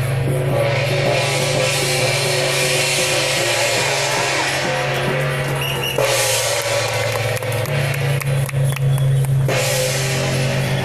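Loud temple-procession music with a steady drum beat and cymbals. The sound changes abruptly about six seconds in.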